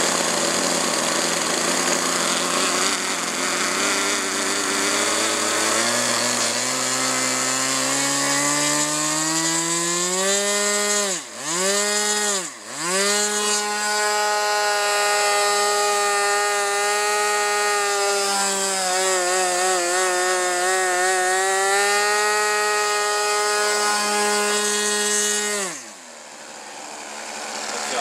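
Small engine of a radio-controlled Tucano model airplane running low, then climbing steadily over several seconds to full throttle. It dips sharply twice in quick throttle chops, holds high revs with a slight wobble, and drops suddenly back near the end: a ground run-up before takeoff.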